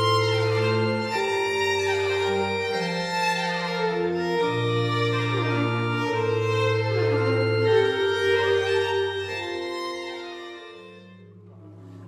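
Early-music ensemble playing 17th-century music on historical instruments: baroque violin over long held, organ-like bass and chord notes. The music fades out near the end.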